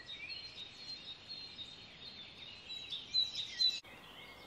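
Small birds chirping and trilling over a steady outdoor hiss, with the brightest calls about three seconds in.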